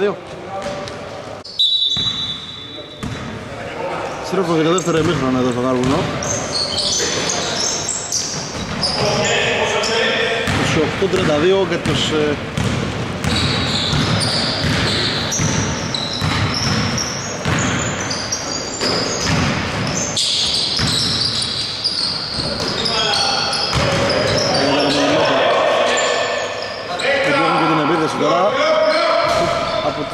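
A basketball bouncing on a hardwood gym floor, repeated bounces ringing in a large hall, with voices on and off.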